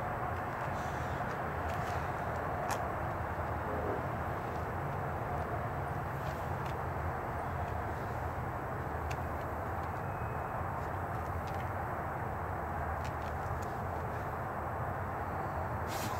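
Steady low background noise, an even rumble and hiss, with a few faint ticks scattered through it.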